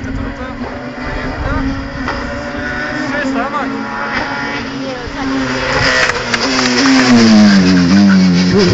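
Hill-climb race car engine approaching up the mountain road at high revs, growing steadily louder, then passing close with its engine note falling in pitch near the end.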